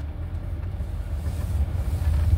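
Steady low rumble of a car heard from inside the cabin through a phone's microphone.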